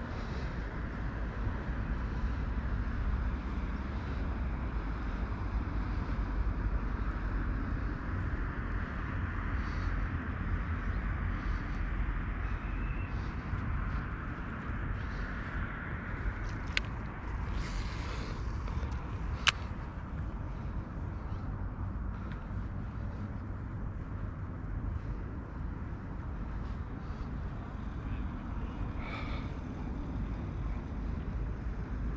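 Steady low outdoor rumble with a hiss above it, and two sharp clicks in the second half.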